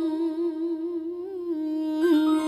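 A woman's solo voice holding one long note in Nghệ Tĩnh folk-song style, unaccompanied, with a gently wavering ornament on the held pitch.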